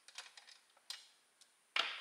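A few faint, light clicks and taps of small hand tools handled against the metal of a small generator engine's valve gear, bunched in the first second.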